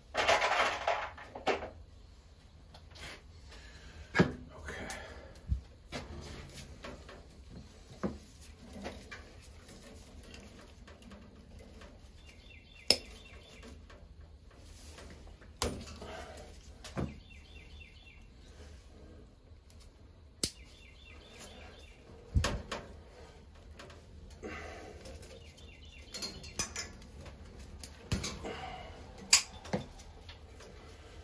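Scattered small clicks and snips of hand tools on thin thermostat wire, with rustling of gloved hands handling the wires and connectors; the loudest rustle comes right at the start.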